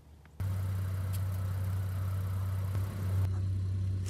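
Pickup truck engine idling, a steady low hum that comes in suddenly about half a second in.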